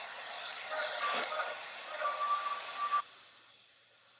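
Street traffic noise from a video playing through a phone's small speaker, thin and without bass, with a few short high tones in it; it cuts off suddenly about three seconds in.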